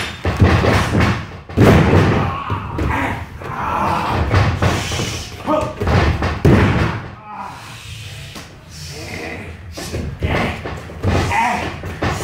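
Wrestlers taking bumps on a wrestling ring's canvas mat: a series of heavy thuds as bodies land on the ring, the loudest in the first seven seconds, with lighter thumps and scuffs of feet on the mat between them.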